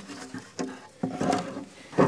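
Cured expanding-foam aquarium background being pulled out of a glass tank, rubbing and squeaking against the glass in several short, steady-pitched squeaks.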